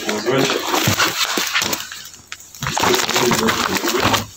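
Speech only: talking in a room, with a short pause about two seconds in.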